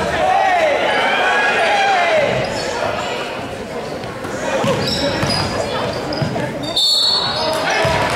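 A basketball dribbled on a hardwood gym floor during play, with players' and onlookers' voices calling out, all echoing in the large hall. About seven seconds in there is a short high shrill tone.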